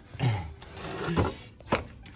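A muddy pool pump's plastic housing and pipe fittings being handled: a short scraping rub at the start, then two sharp knocks, about a second in and near the end.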